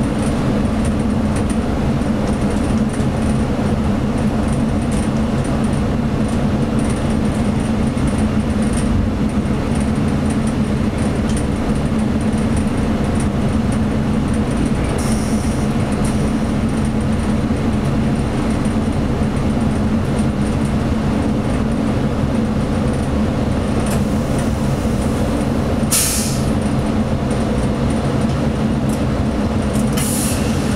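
ČD class 842 diesel railcar heard from its cab while under way: a steady engine drone with wheel-on-rail rumble. Brief hisses cut in about halfway through and again a few seconds before the end.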